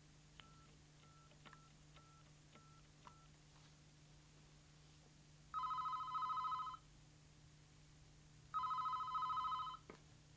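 A mobile phone's keypad beeping about six times as a number is keyed in, then a desk telephone's electronic ringer trilling twice, each ring a double ring of two short bursts.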